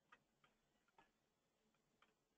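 Near silence with a few very faint ticks, about two a second.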